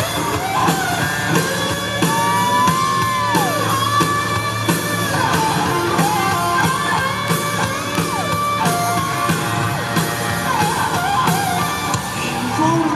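Rock band playing live, loud and continuous: an instrumental break with lead electric guitar bending notes up and down over bass and a steady drum beat.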